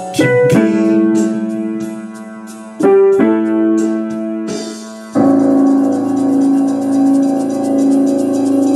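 Electric keyboard playing slow chords: each is struck and left to ring and fade, with a new one about three seconds in. From about five seconds a chord is held with a wavering tremolo.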